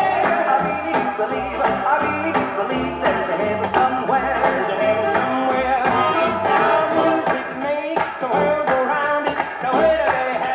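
Music from a 1957 78 rpm record playing on a turntable through loudspeakers, with little treble.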